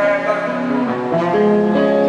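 Acoustic guitar played live, plucked notes ringing in a song, with a run of notes climbing in the second second.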